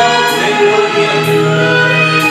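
Loud karaoke music: a backing track with long held melody notes, and a man singing into a handheld microphone.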